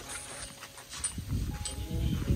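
A low animal call, rising and falling in pitch, starting a little over a second in.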